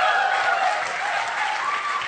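Audience applauding, with a long held tone sounding over the clapping.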